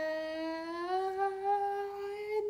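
A young woman's voice holding one long sung note on an open vowel, its pitch rising a little about a second in.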